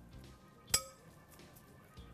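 A metal spoon clinks once against a glass mixing bowl about three quarters of a second in, with a short ring after it.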